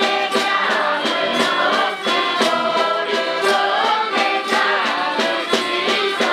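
A mixed group of voices singing a traditional Pasquetta folk carol in chorus, backed by accordions and a melodica, with a snare drum keeping a steady beat.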